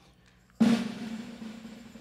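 Snare drum roll on a drum kit, coming in suddenly about half a second in and fading away.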